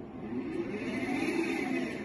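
Servo actuator motor whining as it turns its output shaft back to zero position on a CAN command. The pitch rises as it speeds up and begins to fall near the end as it slows.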